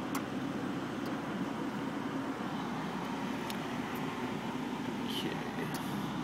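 Engine of a 1995 Mazda Miata, a 1.8-litre four-cylinder, idling steadily as heard from inside the cabin, with a few faint clicks.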